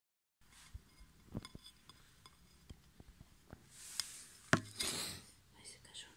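A metal spoon clinking and tapping against a china plate while cutting into a slice of cream cake: a scatter of small clicks, with one louder clink about four and a half seconds in.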